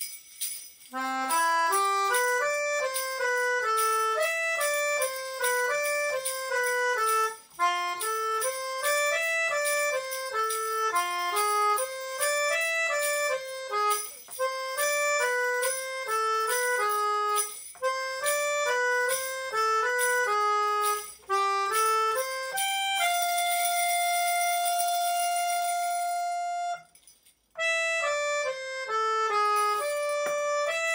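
Yamaha melodica playing a quick melody of short notes, with a hand shaker shaken in steady rhythm alongside it. About 23 seconds in, one long chord is held for a few seconds, then a short break before the tune goes on.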